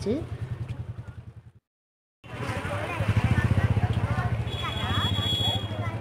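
A motorbike engine running close by, with voices in the background; the sound cuts out to silence for about half a second just before the two-second mark, and a brief high steady tone sounds near the end.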